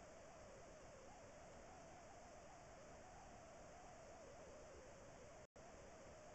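Near silence: a faint steady hiss with a slight wavering hum, cut by a brief total dropout about five and a half seconds in.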